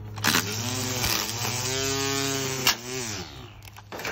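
Ryobi electric string trimmer running and cutting grass, its motor whine dipping and rising in pitch as the load changes, with sharp snaps as the spinning line hits the edging board. The whine falls away shortly before the end.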